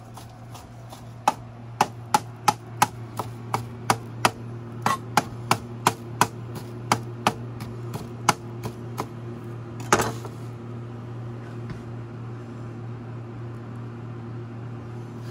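Chef's knife chopping raw baby spinach on a plastic cutting board: a run of sharp, irregular knocks about two or three a second, with one louder knock about ten seconds in. The chopping then stops, leaving a steady low hum.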